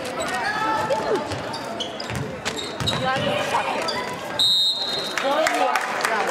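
Basketball bouncing on a hardwood gym floor under crowd chatter, with a single high-pitched referee's whistle blast lasting under a second, about four and a half seconds in. The whistle is the loudest sound.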